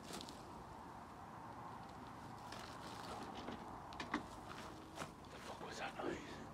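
Quiet footsteps and rustling in long grass and undergrowth, with a few sharper clicks and snaps in the second half, the loudest about four seconds in.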